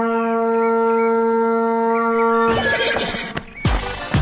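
One long, steady held note lasting about two and a half seconds, then trailing off as the rhythmic children's music starts up again near the end.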